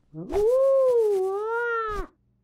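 A high, cartoonish character voice holds one long, drawn-out singsong note that rises at the start and then wavers gently up and down.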